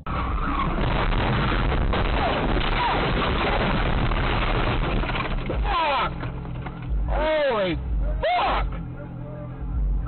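A car crash and rollover: loud crashing, scraping and breaking glass for about the first six seconds. Then several loud yells that sweep up and down in pitch.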